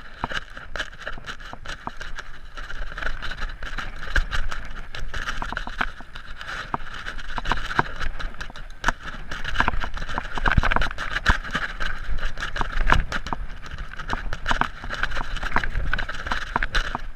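Mountain bike ridden downhill over a rocky dirt trail: a continuous rushing noise with many sharp knocks and rattles as the tyres and frame hit stones.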